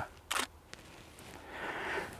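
DSLR shutter firing as a picture is taken: a short mechanical clatter and a single sharp click about half a second later. A soft hiss swells near the end.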